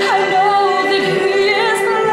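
A woman singing solo in a full voice. She slides down at the start, then holds a note with a wide vibrato.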